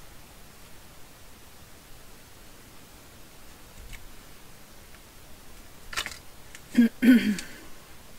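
Quiet room tone with faint handling of paper pieces. Near the end come a few short louder knocks and rustles as a plastic glue bottle is picked up and handled.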